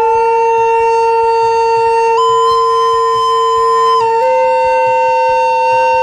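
A flute and a recorder playing together, each holding long sustained notes. The higher note steps up about two seconds in and back down at four seconds, and the lower note steps up slightly just after.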